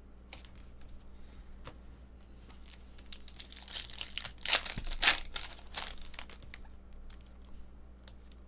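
A foil trading-card pack wrapper being torn open and crinkled by hand, loudest in the middle, after a few light clicks from cards being handled.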